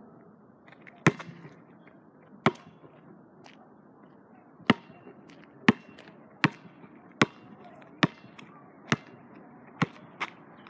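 A basketball bouncing on the ground: two single bounces, then a steady dribble of about one bounce a second from the middle on.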